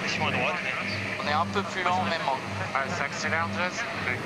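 Voices talking, over a low hum that pulses about twice a second.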